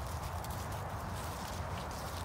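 Faint footsteps and rustling on grass and fallen leaves, over a steady low rumble.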